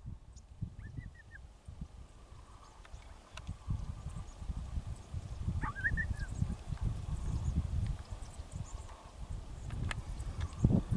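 Low, irregular rumbling of wind buffeting the microphone in open country, with two short chirping bird calls, about a second in and just before six seconds.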